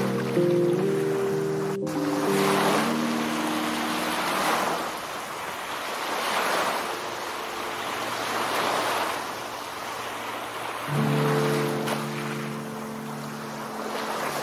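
Ocean surf washing in, swelling and falling about every two seconds. Lofi music plays over it, breaks off about two seconds in and comes back with new chords around eleven seconds.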